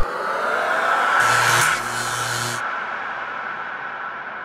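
Whoosh transition sound effect for a title sequence: sweeping tones build into a rush of hiss with a low hum about a second in. The rush cuts off sharply after about two and a half seconds and leaves a fading ring.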